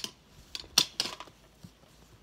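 About four sharp metallic clanks and clicks in the first second, the loudest a little under a second in, from a hanging hive scale and its steel lifting bar being hooked to a beehive and lifted.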